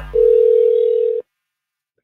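Telephone ringback tone on the caller's line: one steady ring of about a second that cuts off suddenly as the call is about to be answered.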